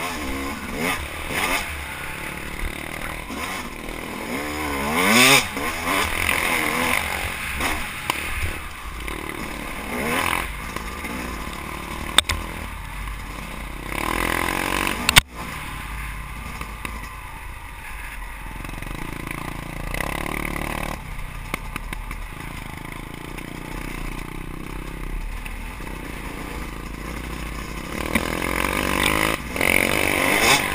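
Yamaha YZ250 two-stroke dirt bike engine heard from on the bike, revving up and falling back with the throttle as it rides a rough trail, with a rising rev about five seconds in. The bike clatters over the bumps, with two sharp knocks about twelve and fifteen seconds in.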